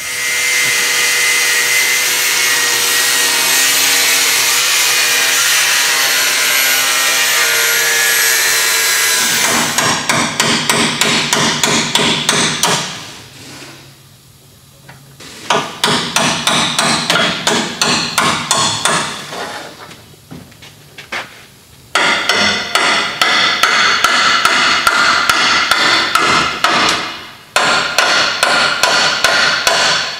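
Steel bracket being cut off at its weld: a power tool runs steadily for about the first nine seconds, then a chisel is driven into the weld in fast runs of sharp metallic strikes, broken by short pauses.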